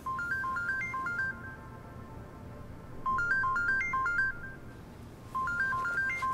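Mobile phone ringing: a short electronic ringtone melody of stepped notes, played three times.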